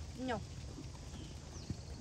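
Hoofbeats of several horses moving around a sand riding arena, with one sharp knock about a second and a half in.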